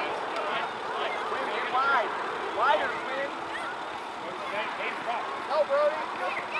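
Indistinct shouts and calls of players and spectators carrying across an outdoor soccer field: short rising and falling voices over a steady background hum.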